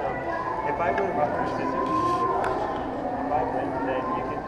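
Indistinct voices over the steady background hum of a shopping-mall corridor, with no clear words standing out.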